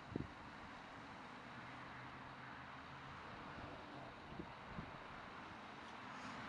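Faint steady outdoor background noise: a low hum under an even hiss, with a soft thump just after the start and two small knocks near the end.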